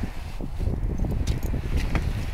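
Wind buffeting the microphone, a steady low rumble, with a few faint ticks over it.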